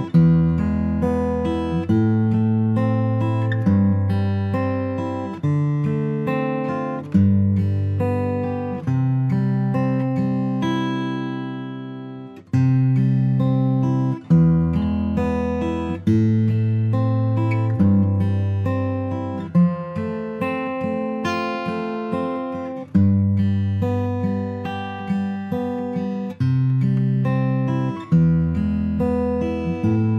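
Martin Custom M-28 (M/0000 body) acoustic guitar with an Adirondack spruce top and ziricote back and sides, played unaccompanied. Chords are struck and left to ring, changing every second or two.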